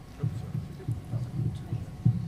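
A handheld microphone being picked up and handled: a string of irregular low, muffled thumps and rubbing against the mic.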